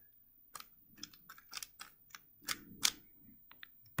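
A stickerless 3x3 speedcube being turned by hand: a series of about a dozen light, quick clicks at an uneven pace as the layers are twisted through a move sequence.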